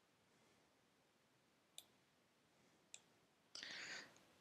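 Near silence broken by two single sharp clicks from a computer keyboard or mouse, about a second apart, then a short noisy burst near the end.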